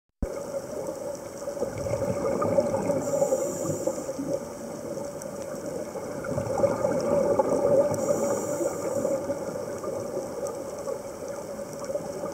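Underwater scuba breathing through a regulator, with a breath about every five seconds: a high hiss of inhalation twice, around three and eight seconds in, and bubbling exhalations between.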